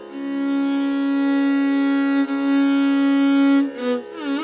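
Carnatic classical music: one long melodic note held steady on a single pitch for about three and a half seconds, with a brief flicker a little past the middle and a short step down to a lower note near the end.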